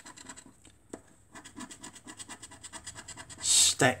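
A coin scratching the silver coating off a scratchcard in quick, rapid strokes.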